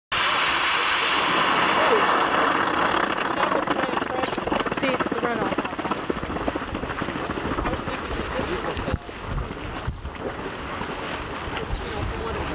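Tilt Geyser's small vent splashing and steaming, a steady rushing hiss that is loudest in the first few seconds and drops off about nine seconds in.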